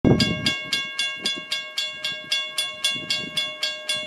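Railroad crossing bell ringing in a fast, even series of strikes, about four a second, each strike ringing on into the next. The crossing has activated with no train at it, a false activation from a signal malfunction.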